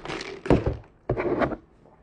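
A noisy sip from a large fast-food cup. About half a second in come two dull thunks, and about a second in a short second burst of noise.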